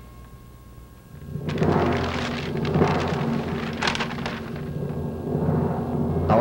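A loud, low rumbling roll, thunder-like, with crackling on top, comes in about a second and a half in after a brief quiet and keeps going.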